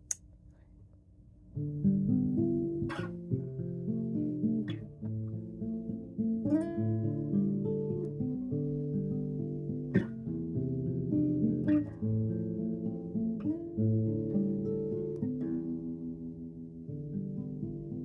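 Acoustic guitar being played: a run of picked notes and chords that starts about a second and a half in, with a few sharp clicks from the strings along the way.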